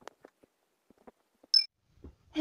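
A few faint clicks, then one short, loud, high-pitched beep about a second and a half in.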